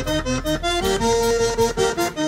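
Zydeco button accordion playing a quick run of notes, then a held note about a second in, over a steady low bass.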